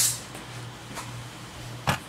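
An object falling off a counter: one sharp knock near the end, over a low steady hum.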